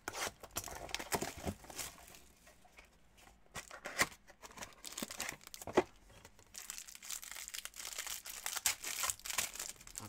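Wrapper of a trading card pack crinkling and tearing as the pack is opened, with scattered rustles and clicks of handling. A denser stretch of tearing noise comes in the last third.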